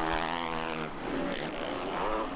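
Motocross bike engine running at a steady pitch, then fading away after about a second.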